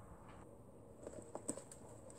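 Faint handling of a cardboard box: a few soft clicks and crackles in the second half as its flaps are pulled open.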